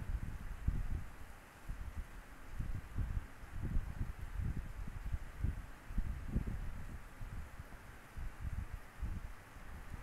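Scissors cutting through layered silky fabric on a wooden surface, heard as irregular soft thuds and rustling as the blades close and the cloth is handled.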